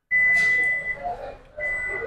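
Toyota Corolla Cross power tailgate's warning buzzer: a steady high beep for about a second, then sounding again near the end, with fainter mechanical noise beneath.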